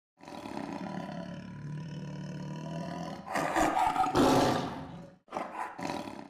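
Big-cat roar sound effect: a low growl for about three seconds swells into a loud, full roar, followed after a short break by a shorter second roar near the end.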